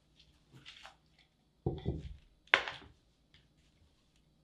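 Wooden box of bead bars handled on a mat-covered table: a soft rustle, then a dull thump a little over one and a half seconds in, and a sharp wooden knock about a second later.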